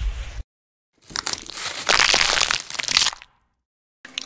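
A loud, dense crunching and crushing sound lasting about two seconds, starting about a second in, made of many sharp cracks. It is preceded by a short, low rubbing noise that cuts off abruptly.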